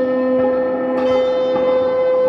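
Guitar playing slow, long ringing notes: one note sustains throughout while a lower note dies away, and a new note is plucked about a second in.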